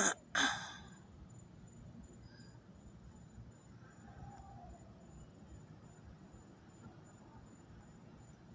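A woman sighs once at the start, a short sharp breath and then a breathy exhale lasting about half a second. Only a faint low background rumble follows.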